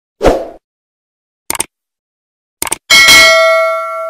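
Subscribe-button animation sound effects: a short whoosh just after the start, then two mouse clicks about a second apart, then a notification bell chime that rings on in several tones and fades.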